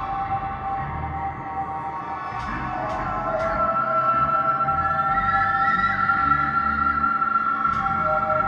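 Live ambient electronic music played on tabletop electronics: layered sustained drone tones, with a new high tone coming in about three seconds in and the music growing louder after it. A few short ticks sound in the middle and near the end.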